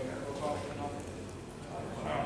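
Indistinct voices of people talking in the background; no words stand out.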